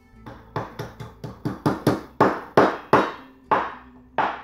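Garlic cloves being smashed with a small metal mallet on a wooden cutting board: a run of about a dozen sharp knocks, irregularly spaced and loudest in the middle.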